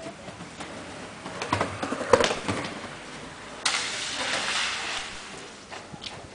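Skateboard rolling over rough concrete, with a cluster of clacks and knocks from the board about two seconds in, then a louder rolling hiss that starts suddenly just past halfway and fades.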